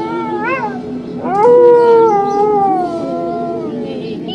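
High howling wails. A short wavering rise-and-fall comes about half a second in, then a long note rises and slides slowly downward in pitch, over a low steady drone.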